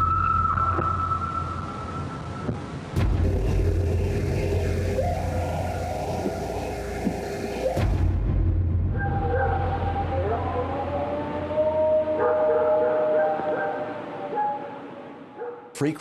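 Playback of field recordings of howls claimed to be Bigfoot: long, drawn-out calls, the first one high and held. About halfway through it switches to a second recording with lower howls that waver and slide in pitch, around 700 Hz.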